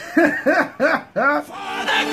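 A person laughing in four drawn-out syllables, each rising and falling in pitch. Music with sustained notes comes in near the end.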